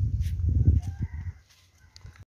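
Wind rumbling on the microphone, loudest in the first second and dying away, with a rooster crowing faintly.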